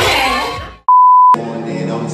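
Music fades out, then a single steady test-tone beep of about half a second, the kind that goes with TV colour bars, is cut off abruptly by music at a lower level.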